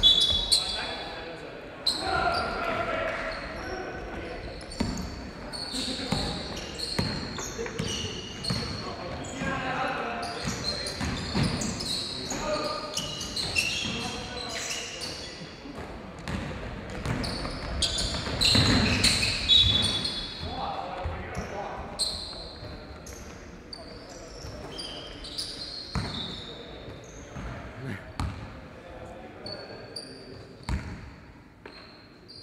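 Indoor basketball play: a ball bouncing on a hard court floor, short high sneaker squeaks and players' shouted calls, louder for a moment about two-thirds of the way through.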